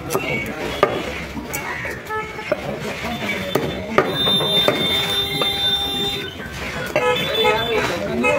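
Busy market-stall sound: voices talking, a few sharp knocks of a knife against a wooden chopping block as a chicken is deboned, and a steady horn-like tone for about two seconds midway.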